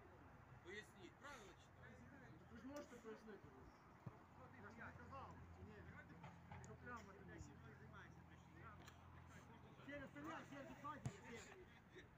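Faint, distant voices of footballers calling out across the pitch, over a low steady hum. There are two sharp knocks, one about four seconds in and one near the end.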